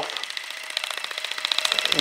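Nu Skin ageLOC LumiSpa facial cleansing device running against a lathered beard: a fast, even buzz that grows louder toward the end.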